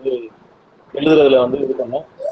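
A man's voice over an online video call: a brief sound, a short pause, then a drawn-out, wavering voiced sound from about a second in.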